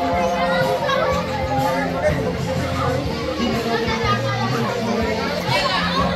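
A crowd of children chattering and calling out over each other, with music playing underneath that has held notes and a steady bass line.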